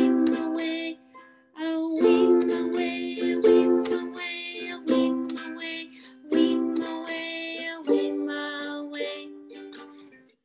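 Ukulele strummed in an even down-up pattern, phrases of ringing chords with a short break about a second in. The chord changes about eight seconds in.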